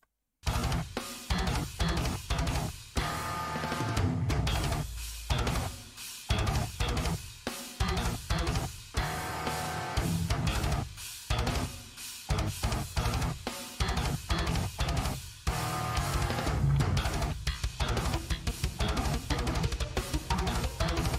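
Technical death metal: distorted Kiesel electric guitars playing tight, stop-start riffs over drums, with brief gaps every couple of seconds. It starts suddenly about half a second in, after silence.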